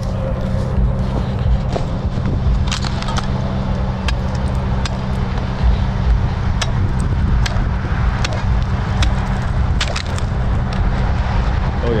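A pole jabbed repeatedly into new pond ice, sharp knocks about once a second from a few seconds in, the ice holding at about two to three inches thick. A steady low rumble runs underneath.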